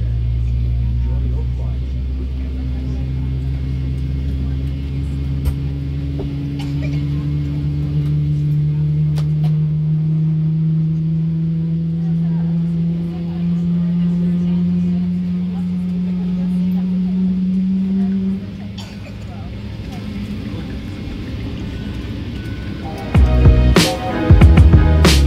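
General Electric GE90-115B turbofan of a Boeing 777-300ER starting up, heard from inside the cabin: a low rumble with a hum that rises slowly and steadily in pitch as the engine spools up. It cuts off about three-quarters of the way through, and music begins near the end.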